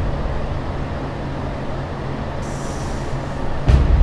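Soundtrack of an animated intro: a steady low rumbling drone, with a brief high hiss a little past halfway and a heavy hit near the end.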